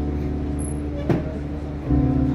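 Live dark-folk/electronic music: a low, steady drone from electric guitar and keyboard, with a single sharp hit about a second in and a new low chord swelling in near the end.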